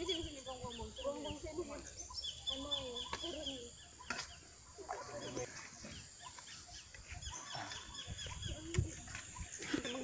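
Hoes and shovels scraping and knocking into a pile of soil, compost and coco peat as it is turned and mixed by hand, with occasional sharper knocks. Low voices in the background and short bursts of a rapid high chirping.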